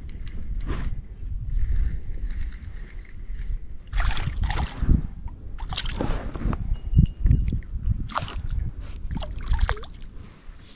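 A hooked redfin perch splashing and thrashing at the water's surface beside a kayak as it is reeled in on a spinning reel, with several splashes in the second half, over a constant low rumble.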